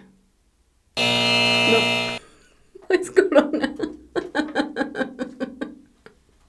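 A game-show wrong-answer buzzer sounds once for about a second, right after a guess, then a woman laughs in quick repeated bursts.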